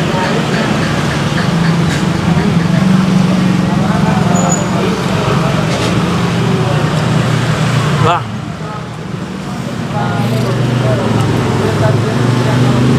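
Street traffic with motorbike engines running past, a steady low engine hum that drops away briefly about eight seconds in and then comes back.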